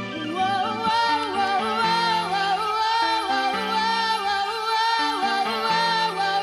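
Music: a high, wavering melody over a bass line that steps from note to note, with a steady pulse.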